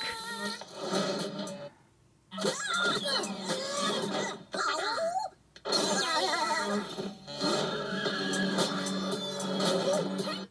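Animated movie trailer soundtrack playing through a TV's speakers: music mixed with cartoon character voices. It is broken by brief silences between shots, about two seconds in and twice around four and a half to five and a half seconds in.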